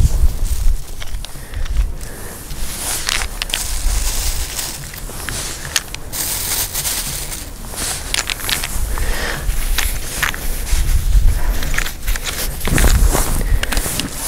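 Rustling and crackling handling noise as a gauze bag of walnuts is gathered, twisted shut and tied, over an uneven low rumble.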